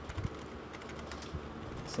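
Computer keyboard typing: a few scattered keystrokes.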